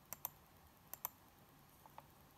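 Computer mouse clicking: two quick double clicks about a second apart, then a fainter pair near the end, as market sell orders are placed on a trading platform.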